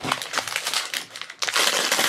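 Tissue paper crinkling and rustling as a small toy doll is unwrapped by hand, louder in the second half.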